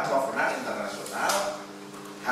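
A man speaking, in a lecture-hall voice with a raised, emphatic delivery.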